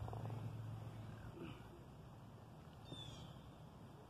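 Quiet outdoor ambience: a low steady rumble that fades after about the first second, and a single short descending bird chirp about three seconds in.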